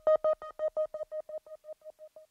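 A single synthesizer note repeated rapidly, about seven beeps a second, fading out steadily as a reggaeton track ends.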